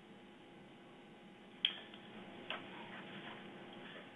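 Quiet background with a sharp click about a second and a half in and a softer click about a second later.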